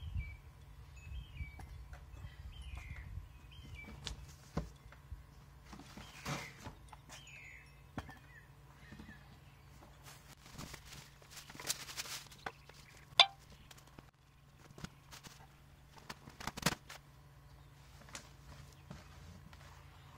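Handling and unpacking noises: knocks and thuds as the tiller's solid plastic wheels and parts are set down and moved about in a cardboard box, with rustling of cardboard and plastic wrapping. The loudest is a single sharp knock a little past the middle. A small bird chirps several times in the first few seconds.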